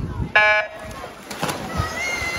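Electronic race-start beep at a swim meet: one short, steady tone lasting about a third of a second, signalling the swimmers off the blocks. About a second later come the splashes of the swimmers diving into the pool.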